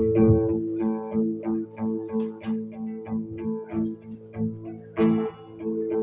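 Live folk band playing an instrumental intro: acoustic guitar picked in a steady rhythm over sustained keyboard notes, with a fuller chord about five seconds in.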